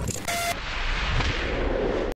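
A short steady tone in the first half-second, then a steady rushing noise.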